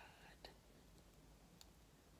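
Near silence: faint room tone with a couple of soft, small clicks.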